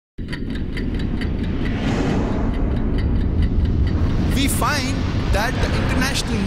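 Intro soundtrack effect that starts suddenly: a deep, steady rumble under a fast ticking, about five ticks a second, which fades out after about four seconds. A voice comes in over the rumble near the end.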